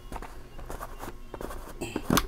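Blue plastic screw lid of a wafer-stick jar being twisted open by hand: a run of small clicks and scrapes, busier near the end.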